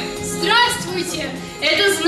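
A woman's voice reciting into a microphone over background music with steady held notes.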